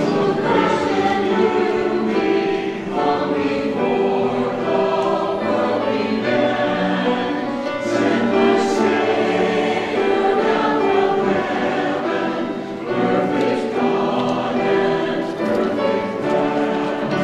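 Mixed church choir of men and women singing an anthem, with continuous sustained sung chords.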